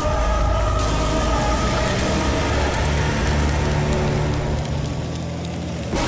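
Dramatic background score: held tones over a dense wash of sound, settling into a sustained low drone that eases off just before the end.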